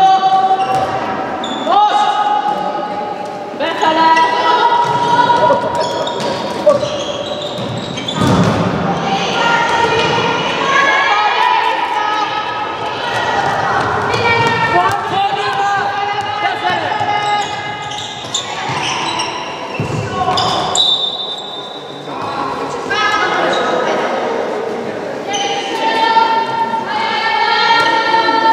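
A handball bouncing and thudding on a wooden sports-hall floor, with many high-pitched shouts and calls from young players echoing in the hall.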